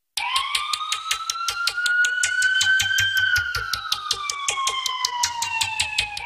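A siren-style sound effect in a news bulletin's police-segment sting. One slow wail glides up for about three seconds and back down, over a fast ticking beat of about seven ticks a second. It cuts in abruptly from silence.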